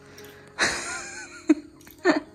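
A person's loud, breathy gasp about half a second in, followed by a single short click.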